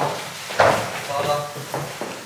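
People's voices talking in brief snatches, with one sharp thump about half a second in.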